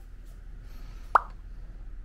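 A single short, loud 'bloop' pop that sweeps quickly upward in pitch, an editing sound effect marking the on-screen caption, about a second in, over a faint steady background hum.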